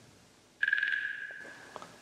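Edited TV sound effect: a single high ringing tone that comes in suddenly about half a second in and fades away over about a second, after a moment of near silence.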